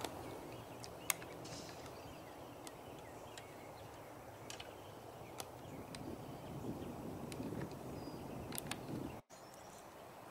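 A golf club strikes the ball on a fairway approach shot with a single sharp click about a second in. Faint outdoor background follows.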